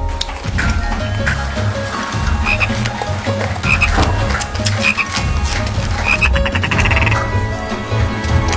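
Repeated low animal calls in rhythmic pulses, with short higher calls about once a second and a rapid rattling trill about six seconds in.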